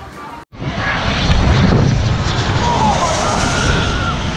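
Crowd chatter that cuts off abruptly about half a second in, followed by loud, steady jet engine noise from a small twin-engined business jet on the runway.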